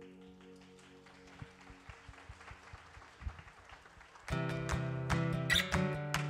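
A soft sustained keyboard pad fades out, leaving quiet room noise with scattered small clicks. About four seconds in, the band comes in loudly with a steady rhythmic acoustic-guitar strum over full keyboard chords.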